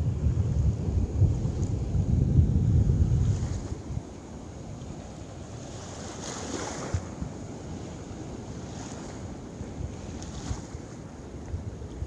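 Wind buffeting the microphone, loud for the first four seconds and then easing off, over the steady wash of surf on the beach. About six seconds in, a wave rushes up the sand.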